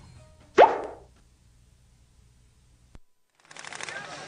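A single short sound effect with a quick upward sweep in pitch, closing an advertisement's logo card, followed by near silence. A click comes near three seconds in, then a steady hiss of outdoor background noise starts as the live broadcast returns.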